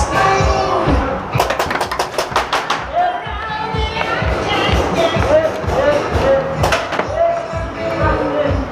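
Loud music with a steady beat and a singing voice. A rapid run of sharp clicks comes about a second and a half in.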